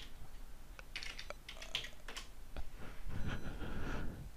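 Computer keyboard typing: scattered, irregular key clicks.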